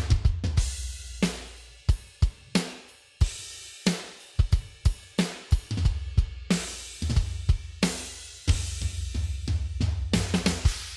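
A programmed hard rock drum part played back from a virtual drum instrument: kick, snare and crash cymbal hits in a driving beat. A low sustained rumble sits under the first couple of seconds and again from about six to nine seconds in.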